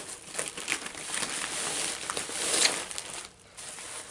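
A padded paper mailer and the plastic-wrapped contents inside it rustle as hands open the envelope and draw the contents out. The rustling comes in quick, irregular crackles, with a brief lull a little past three seconds in.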